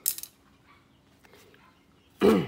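A short rustle of paper right at the start as a spiral notebook is slid away, then near quiet.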